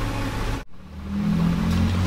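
A steady low mechanical hum cuts off suddenly less than a second in, then comes back and grows slightly louder.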